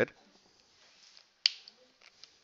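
A single sharp click about one and a half seconds in, with a couple of fainter ticks just after: a marker tapping against the writing board.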